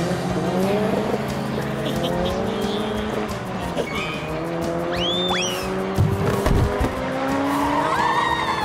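Cartoon go-kart engine sound effects running as karts race past, the engine pitch gliding up and down as they pass, with a brief high rising-and-falling sound about five seconds in and a few knocks about six seconds in, over background music.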